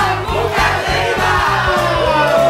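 Background music with a steady beat, with a group of people cheering and shouting together over it.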